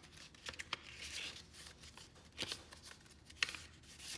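Pages of a small handmade kraft-paper booklet being flipped and handled: soft paper rustles with a few light taps.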